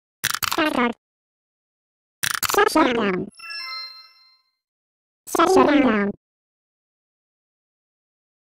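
Three short bursts of a high, sliding cartoon-like voice, with a brief bell-like chime right after the second; the sound cuts to silence after about six seconds.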